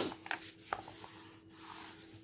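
Glossy catalogue page being turned and then rubbed under a hand: a loud paper swish right at the start, then soft rubbing with a couple of small taps on the paper.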